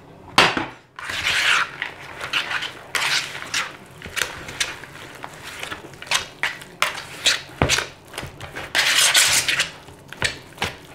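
A wire whisk stirring a thick mix of sour cream and shredded cheese in a plastic mixing bowl: irregular scraping strokes and clacks of the whisk against the bowl. There is a sharp knock about half a second in.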